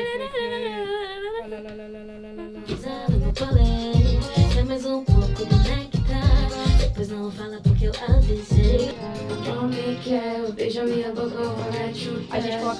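A woman sings a melody into a handheld microphone, a guide vocal laid down to keep the tune. About three seconds in, a backing beat with heavy bass-drum hits comes in under her voice, and the hits drop out near the end.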